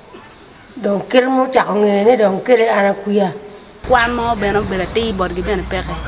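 A steady high-pitched drone of chirring insects under spoken words. It grows louder from about four seconds in, when a low outdoor rumble also comes in.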